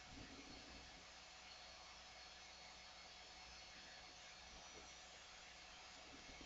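Near silence: a faint, steady background hiss with a low hum.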